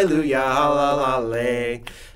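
Men singing a children's praise song on drawn-out 'la la' syllables. The last note falls in pitch and stops shortly before the end, leaving a brief pause.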